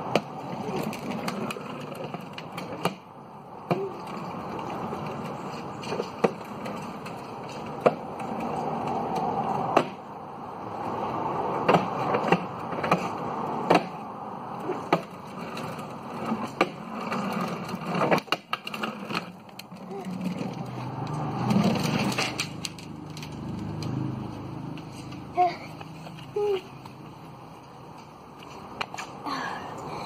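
Hard plastic wheels of a child's ride-on toy motorbike rolling over coarse tarmac: a steady grinding rolling noise broken by scattered clicks and knocks, growing louder and softer as it moves.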